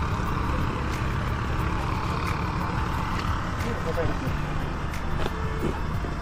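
Steady low rumble of a vehicle running, with faint voices briefly in the background.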